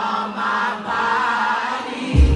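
Woman singing live into a microphone through a concert sound system, with held, wavering notes and almost no accompaniment under her voice.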